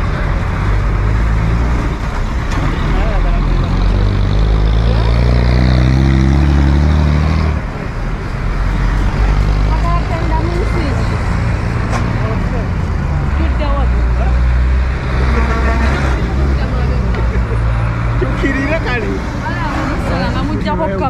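City street traffic with bus and minibus engines running close by. A heavy engine is loudest through the first seven or so seconds and drops off suddenly, while other vehicles keep running.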